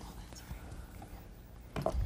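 Quiet room tone, with a faint click about half a second in and a short breath taken near the end.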